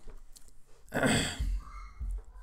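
A man's short breathy laugh, a single exhale through the nose and mouth about a second in.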